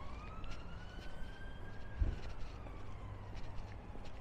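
An emergency-vehicle siren in a slow wail, one long rise in pitch that peaks about halfway through and then falls away, heard at a distance over a low outdoor rumble. A low thump comes about halfway through.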